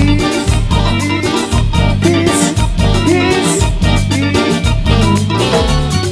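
Live cumbia band playing an instrumental stretch: an electric bass line and keyboard melody over a steady, even percussion beat.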